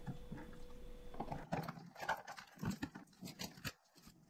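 Soft handling noises at a workbench: a scattering of light knocks and rustles as latex gloves are handled and pulled off, with a faint steady hum in the first second and a half.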